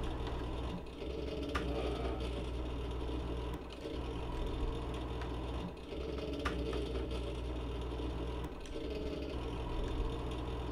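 A steady low droning hum that dips briefly about every two to three seconds, with a few faint clicks.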